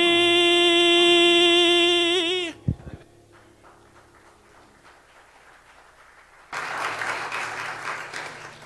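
A man's voice holds the song's last sung note into a microphone, breaking into vibrato and cutting off about two and a half seconds in, followed by a single thump. About six and a half seconds in, the congregation starts applauding.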